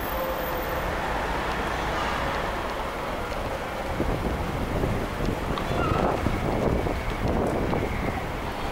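Wind rumbling on the microphone over the steady background noise of a busy city street, a little louder and more gusty from about halfway through.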